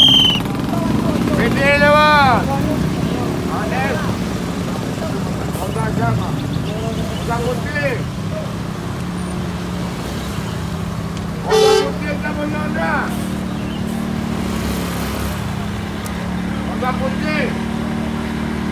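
Congested street traffic: the diesel engine of a large coach bus running steadily close by among motorbikes, with people's voices around. A horn toots right at the start and another short honk sounds past the middle.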